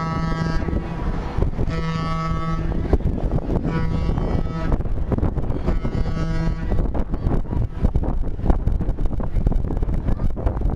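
Boat horn on an excursion boat sounding a series of steady single-pitch blasts, each about a second long with short gaps, four in all, ending about two-thirds of the way through. Wind rumbles on the microphone throughout and gets gustier after the last blast.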